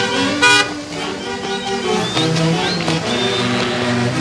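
Huaylarsh folk music from a live band plays throughout. A short, loud vehicle-horn toot cuts in about half a second in.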